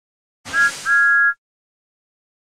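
Cartoon steam-locomotive whistle: a short toot and then a longer one, two tones sounding together over a hiss.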